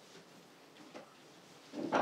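A quiet room with faint rustling of movement. Just before the end, a loud voice-like cry starts up.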